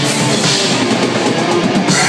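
Black metal band playing live, with a pounding drum kit and distorted electric guitars, loud and continuous.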